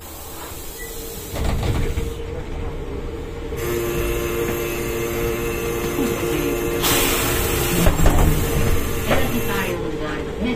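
Ikarus 280.94T trolleybus with GVM electrical equipment running: a steady electric whine with a second, lower tone joining, and tones sliding downward in the later seconds over a low rumble. A burst of hiss lasting about a second comes about seven seconds in.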